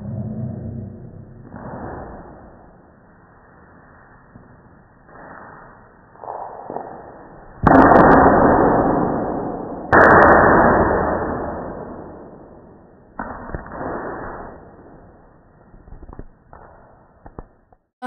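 Slowed-down slow-motion audio of a street-hockey slapshot, dull and muffled: two loud, drawn-out impacts about eight and ten seconds in, each fading slowly, with fainter knocks between. They come from the stick striking the ball and the shot hitting the plastic net, which the shot broke.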